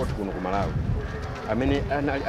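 A man's voice talking in conversation, in a language the recogniser could not transcribe.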